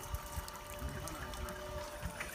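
Lake water lapping and trickling against a wooden dock: a steady, moderate wash with soft, irregular low bumps.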